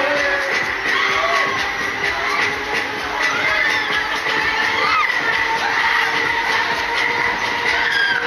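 Loud fairground music playing continuously from a spinning ride's sound system, with riders' screams and cheers rising and falling over it.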